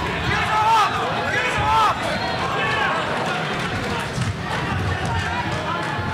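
Boxing crowd shouting, with single voices calling out now and then over a steady murmur of spectators.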